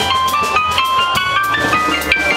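Live Latin jazz: an electronic stage keyboard plays a quick run of single notes that climbs in steps, with drums and a steady bass underneath.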